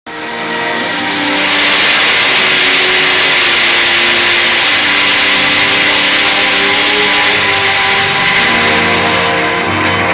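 Film soundtrack: a loud, steady rushing roar laid over long held music notes. The roar fades away near the end, leaving the music.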